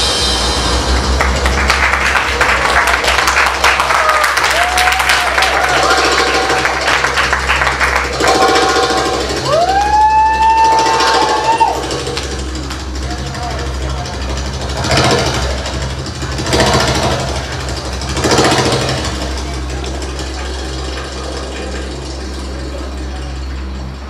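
Audience clapping and cheering after a belly-dance number, with a couple of long rising whoops. It thins out about halfway through into crowd voices, with a few brief louder bursts.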